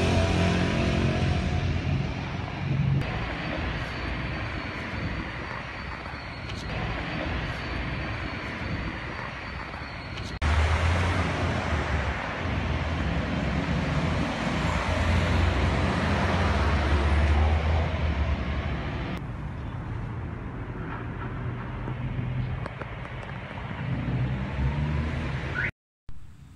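Street noise picked up by a phone microphone, with road traffic and a low rumble. The sound changes abruptly about 3, 10 and 19 seconds in, where separate recordings are cut together.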